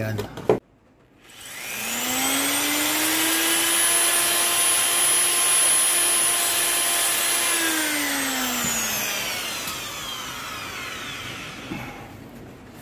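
Electric drill boring a new mounting hole through the scooter's metal fork bracket: the motor whine rises as it spins up about a second in, holds steady for several seconds, then falls as it slows about eight seconds in.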